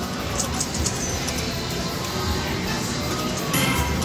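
Video slot machine playing its spin music and reel sounds over a steady casino din, with a short bright tone about three and a half seconds in as the reels come to rest.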